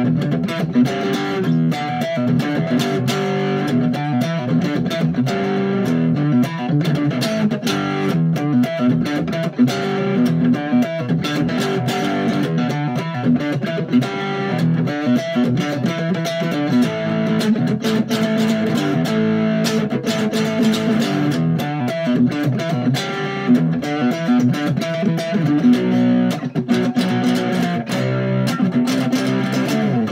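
Handmade electric cigar box guitar picked with a flat pick, playing a steady, fast riff of quickly changing notes without a break.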